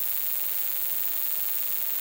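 Steady electrical hiss with a faint mains hum underneath, the noise floor of a microphone and sound-system feed in a pause between speech.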